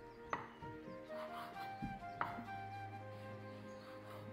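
Instrumental background music with steady held notes, over a kitchen knife chopping on a wooden cutting board. Three sharp knocks stand out near the start and about two seconds in.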